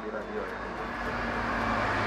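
Steady noise of a road vehicle going by, growing gradually louder, over a low steady hum.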